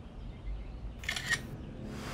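Smartphone camera shutter sound: a short, crisp click about a second in as a picture is taken.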